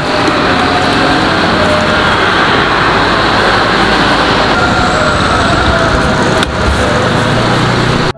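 Loud, steady motor-vehicle noise: engines and road traffic running without a break.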